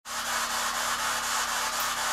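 Spirit box radio sweeping the FM band: a steady hiss of static, broken by a faint regular pulse as it skips from station to station.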